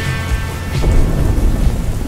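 Steady rain with low rolling thunder. The reverb tail of a slowed, bass-boosted rock song fades out beneath it.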